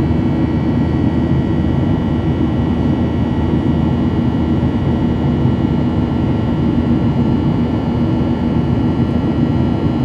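Steady noise of a Boeing 737-800's CFM56-7B turbofan engines running during the climb after takeoff, heard inside the cabin. A dense low noise carries several faint, steady high whining tones above it, unchanging throughout.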